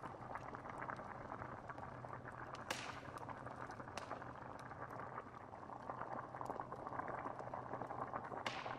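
Stew bubbling steadily in a pot over an open fire, a thick continuous burble, with the fire crackling and two sharper pops about three and four seconds in.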